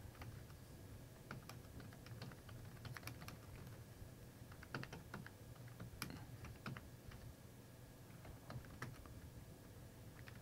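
Faint computer keyboard typing: irregular, quick key clicks as a line of text is typed, with short pauses between bursts of keystrokes.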